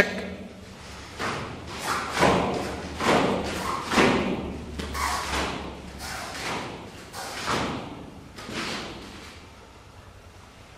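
Taekwondo athlete performing the Keumgang poomsae: about ten sharp thuds and swishes, irregularly spaced, as his feet strike the foam mats and his uniform snaps with each technique. Each one echoes briefly in the hall, and they die away near the end.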